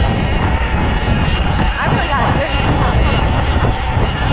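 Wind buffeting the microphone and a dull rumble as a Sur-Ron Light Bee X electric dirt bike is ridden over bumpy grass.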